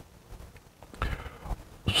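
A quiet room with a few soft, brief breath and handling noises about a second in, including a couple of light knocks.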